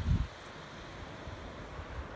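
Wind buffeting the microphone, with a strong low gust right at the start, over a steady wash of ocean surf breaking in an inlet.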